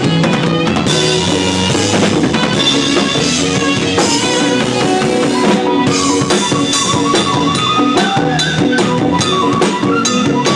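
A live band playing an instrumental passage, led by a close-miked acoustic drum kit struck with sticks on drums and cymbals, with the rest of the band's pitched instruments sustaining notes behind it.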